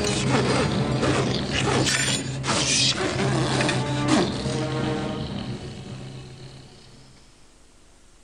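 Creaking, clicking and ratcheting mechanical sound effects over a steady low hum, fading away over the last few seconds.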